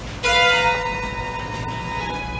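Solo violin, bowed: after a brief lift of the bow, a sharply attacked chord of several notes sounds about a quarter second in and rings. Some of its notes fall away within half a second while the others are held.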